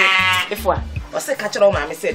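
A woman's high, quavering wailing cry, over background music with a low bass line.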